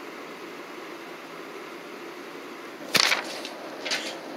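Low steady hiss, then about three seconds in a sudden short swish and rustle of handling noise as the handheld camera is moved.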